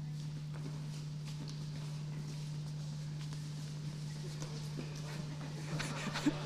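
A small crowd's footsteps, many people shuffling and stepping slowly in scattered, irregular taps over a steady low electrical hum.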